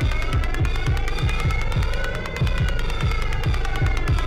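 Live electronic music played on hardware synthesizers and drum machines: deep bass hits that drop in pitch repeat several times a second under held synth chords, with fast, even hi-hat ticks on top.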